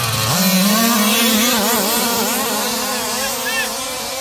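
Several 1/5-scale gas RC cars' two-stroke engines revving up together, the pitch climbing sharply about a third of a second in, then wavering up and down with the throttle as they race.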